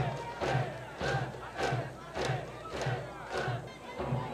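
High school baseball cheering section chanting in unison in voices only, with no brass band, shouting on a regular beat of about two shouts a second with a drum thumping in time.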